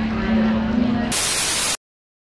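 A harp note rings over a room's murmur, then about a second in a loud burst of TV static hiss cuts in for over half a second and stops dead into silence.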